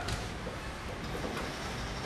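A pause in speech: steady room tone, a low rumble with an even hiss.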